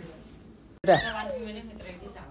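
A young child's brief high-pitched squeal about a second in, falling quickly in pitch.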